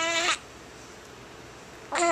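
Infant's short fussing cries: one brief wavering wail in the first moment and another starting right at the end, each under half a second long.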